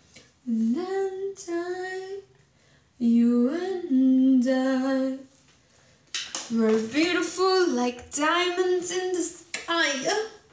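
A woman singing unaccompanied in three phrases of held, gliding notes with short pauses between them.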